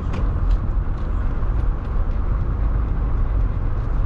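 Car on the move heard from inside the cabin: a steady low rumble of engine and road noise.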